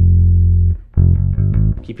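Ibanez electric bass played fingerstyle: a held low note, then a second low note about a second in.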